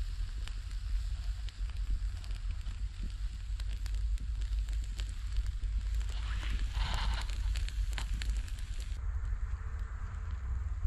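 Embers crackling and popping in a small earth-pit fire under field rats roasting on a wire grill, with a steady wind rumble on the microphone.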